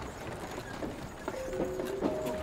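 Faint, irregular light knocks like hoof clip-clops, with a few held musical notes of the soundtrack coming in about a second and a half in.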